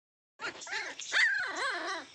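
Puppies whining and yelping while they tussle in play: a high cry that wavers up and down in pitch, starting about half a second in.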